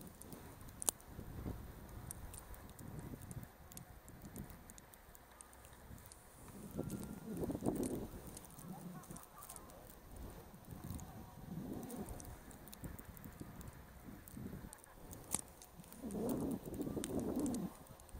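Skis sliding and turning through fresh powder snow, swelling in surges about a third of the way in, near the middle and near the end, over a low rumble from the body-worn camera's microphone.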